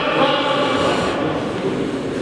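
Reverberant sports-hall noise, with a faint distant voice calling out during the first second or so.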